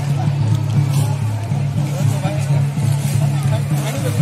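People talking over music, with a loud steady low hum underneath.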